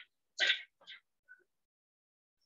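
A person clearing their throat: one short burst about half a second in, followed by two fainter, shorter sounds.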